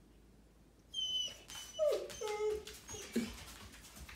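Dog whining in a run of short cries starting about a second in, some high and thin, others lower and falling in pitch, with a toy ball held in its mouth. He is whining at being told to drop his new toy before going outside.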